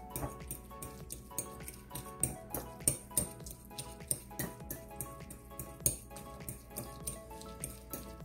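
A metal fork clicking against a glass bowl many times, irregularly, as cubes of firm tofu are mashed, over background music.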